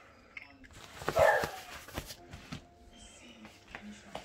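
A fabric cover rustling against a wire dog crate, with a few light clicks and rattles from the crate's metal frame about two seconds in.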